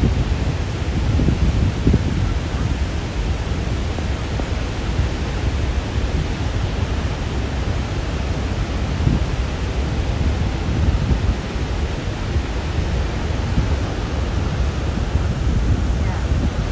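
Steady roar of Niagara's Horseshoe Falls, a deep, even rush of falling water and spray with no breaks.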